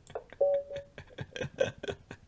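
A short electronic notification tone from the online chess game, one held note lasting about half a second, sounding the end of the game at checkmate, among light clicks.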